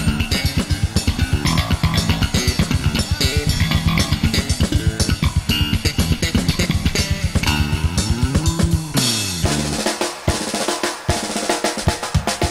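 Live kawadi baila band music: a fast, busy electric bass line locked to drums. About eight seconds in, the bass slides up and back down. After that the bass drops out and the electronic drum kit carries on alone with sparser hits, the opening of a drum solo.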